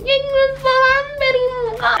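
A young woman's voice singing a few long, drawn-out syllables on nearly one pitch in a playful sing-song, dipping slightly near the end before she goes back to talking.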